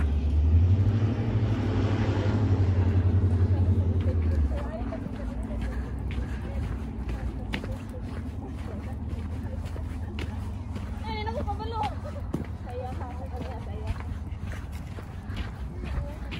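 Wind buffeting a phone microphone outdoors, a heavy low rumble that cuts off about four and a half seconds in. After it, quieter open-air sound with faint voices near the middle and light footsteps on snow.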